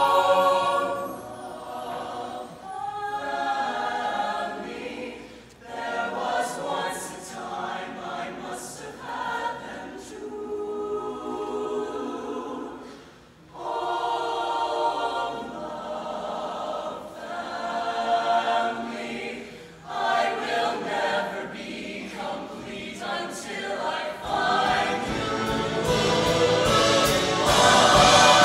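High school show choir of mixed voices singing a slow passage in phrases with short breaks between them, swelling louder near the end.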